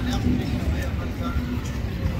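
Indistinct voices of bystanders over a continuous low rumble.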